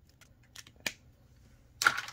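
A felt-tip marker handled over a paper chart on a tabletop: a few light clicks and taps, then one louder short clatter near the end.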